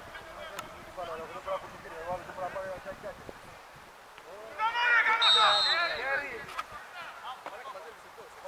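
Men's voices calling and shouting across a football pitch, loudest for about a second and a half halfway through. In the middle of that burst comes a short, steady referee's whistle blast.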